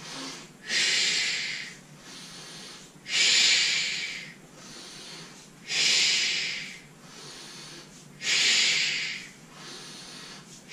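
A man's forceful exhales through the mouth, four strong hissing breaths about every two and a half seconds with quieter inhales between, paced to the leg switches of a Pilates single leg stretch.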